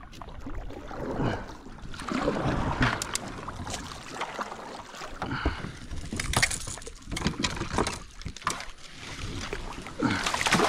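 Kayak paddle strokes and water sloshing against the kayak's hull as it is steered through the water, with scattered sharp knocks and clicks of the paddle and gear against the boat.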